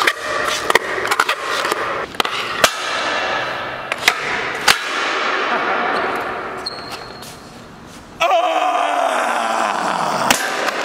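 Skateboard with a door-hinged deck whose hinge screws have broken: several sharp clacks and knocks of the board on a concrete floor, then the wheels rolling and fading away. About eight seconds in, a man yells loudly.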